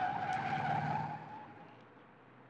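A car's tyres squealing as it speeds away, with its engine running underneath. The squeal holds one steady pitch for about a second, then fades away.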